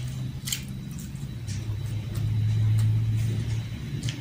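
Eating noises: wet chewing and lip smacks, with a few sharp clicks, as a handful of rice and hot dog is eaten by hand. Under them runs a low droning hum that swells about two seconds in and fades again near the end.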